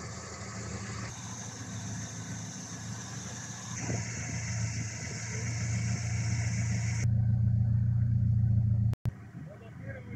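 BMW E30 318iS's four-cylinder engine idling with a steady low hum. Its tone shifts abruptly about a second in, about four seconds in and about seven seconds in, where it is loudest. It cuts out for a moment near the end.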